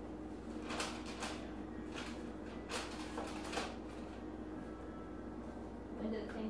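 A man chugging eggnog from a glass: a run of soft gulps in the first few seconds, over a steady low hum.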